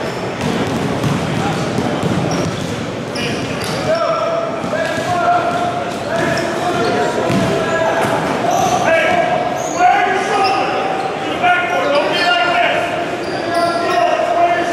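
A basketball bouncing and players and coaches making contact on a gym floor, with voices and echo of a large sports hall around them.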